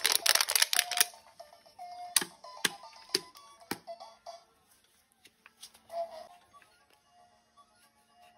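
An empty plastic water bottle being crinkled and squeezed by hand: a dense crackle in the first second, then single sharp cracks about every half second up to about four seconds in, thinning to a few faint clicks. Faint music-like tones sound underneath.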